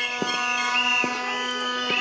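Protest noise from a live outside feed: a steady horn-like drone, high whistle-like tones coming and going above it, and a few sharp thumps. The noise is loud enough to drown out the reporter.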